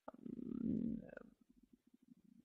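Faint, low creaky hesitation murmur from a woman's voice over a headset microphone, opening with a soft click and dying away after about a second.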